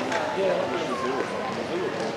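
Chatter of many people talking at once, a steady overlapping babble of voices with no single speaker standing out.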